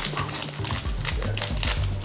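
Foil booster-pack wrapper being torn open and crinkled, with a few sharp crackles, over background music.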